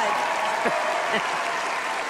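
Studio audience applauding, a steady clapping wash with a few brief voices over it.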